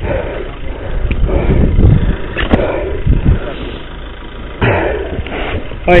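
Wind buffeting a head-mounted camera's microphone and the rumble and rattle of a mountain bike rolling fast over a gravel track, uneven, with a louder jolt about four and a half seconds in.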